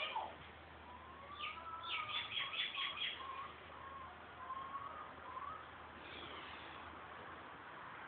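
A bird chirping and whistling in the background: a quick run of high chirps about two seconds in, over short rising and falling whistles, with a faint steady low hum underneath.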